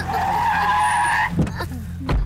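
Car tyres squealing as an SUV skids to a stop, about a second and a quarter long, followed by a short thud.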